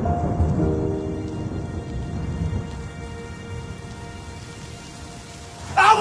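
Rain falling with a low rumble of thunder, loudest early on and dying away, under a few held music chords.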